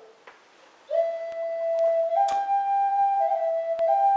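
Flute playing a slow Lakota honor song in long held notes. After a short pause about a second in, the melody steps up to a higher note, drops back, and rises again near the end.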